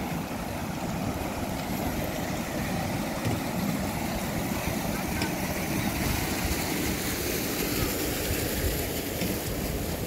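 Wind buffeting the microphone: a steady rush with an uneven low rumble, without a break.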